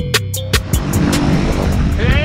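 Intro music with a drum-machine beat stops well under a second in. A steady engine-like drone with outdoor noise follows.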